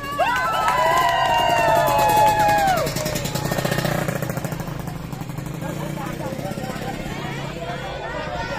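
A group of women marchers chanting a team yell in unison, several voices held together for about three seconds and dropping in pitch as it ends, followed by quieter mixed voices.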